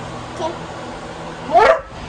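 A dog barks once, a short, loud bark rising in pitch near the end.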